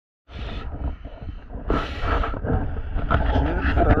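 Water sloshing and a low rumble against a camera held at the water's surface, with two louder rushing splashes; a man starts talking near the end.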